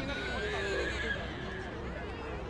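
People's voices around the pitch, with one drawn-out high-pitched call over them that fades out about a second and a half in.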